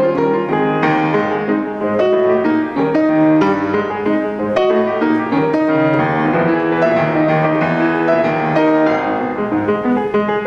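Solo acoustic grand piano being played: a continuous flow of chords and melody notes.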